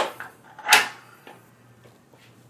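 A kingpin being set into the jaws of a Curt A20 fifth wheel hitch head: a sharp click, then a short, louder clunk about three-quarters of a second in.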